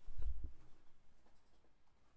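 A few soft, low thumps in the first half second, then faint room tone.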